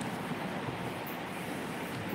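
Steady background noise: an even low rumble and hiss with no distinct events.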